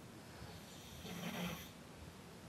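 A sleeping person snoring faintly, with one snore a little over a second in.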